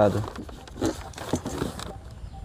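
A man's voice trailing off, then scattered soft clicks and handling noises with a few brief murmurs.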